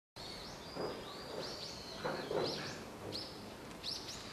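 Small birds chirping over a steady outdoor hiss: short, high calls, about two a second. A few soft rustling sounds lie beneath.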